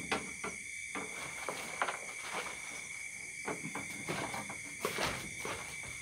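Crickets and other night insects trilling steadily, with scattered rustles and knocks from someone moving about and handling bedding on a wooden hut floor.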